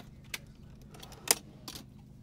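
Locking drawer slides being pulled out on a vehicle drawer system: three sharp clicks as the slide runs out and latches, the loudest just past a second in.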